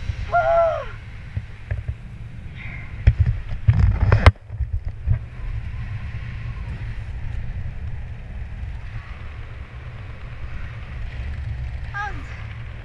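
Wind buffeting an action camera's microphone during a parachute descent under an open canopy, a steady low rumble with louder rushes and knocks about three to four seconds in. A short falling whistle-like tone sounds about half a second in.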